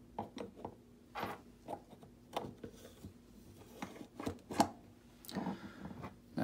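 Pistol frame being fitted onto its upside-down slide and barrel assembly: scattered light metal clicks, knocks and scraping as the parts slide and seat together, with the sharpest click about four and a half seconds in.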